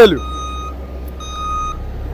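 Reversing alarm on a road roller beeping twice, each beep a steady high tone about half a second long, about one a second, over the steady low drone of the diesel engines.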